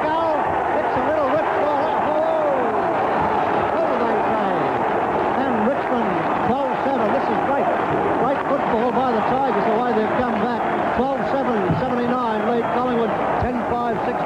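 Football crowd cheering a goal: a dense mass of shouting voices at a steady, loud level.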